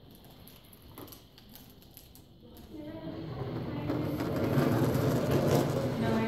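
Indistinct talking in the room, quiet at first and growing louder from about halfway.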